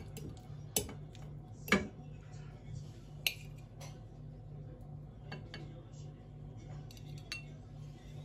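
Metal fork clinking against a glass baking dish and a porcelain plate while serving pieces of baked candied pumpkin: three sharp clinks in the first three and a half seconds, then a few fainter taps. A low steady hum runs underneath.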